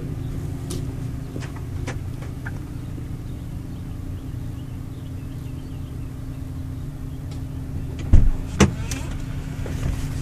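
6.4-litre Power Stroke V8 diesel idling steadily, heard from inside the truck's cab. A few light clicks come early, and two sharp thumps come a little after eight seconds in.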